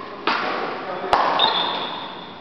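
Badminton rally: a sharp crack of a racket striking the shuttlecock just past the middle, then a brief high-pitched squeak.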